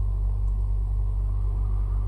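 Steady low background hum with no changes, a constant rumble that also runs under the speech around it.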